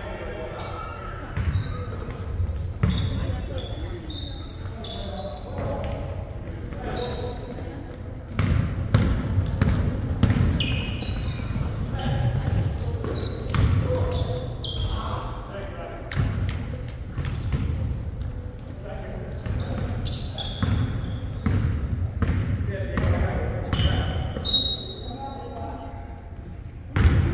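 Pickup basketball game play on a hardwood gym floor: the ball bouncing, repeated thuds of footfalls, short high sneaker squeaks and players' voices, all echoing in a large hall. The squeaks and thuds get busier about a third of the way in.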